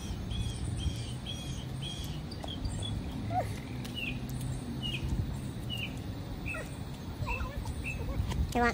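A bird chirping repeatedly over a low steady hum. The short high notes come two or three a second at first, then give way to scattered notes that slur downward.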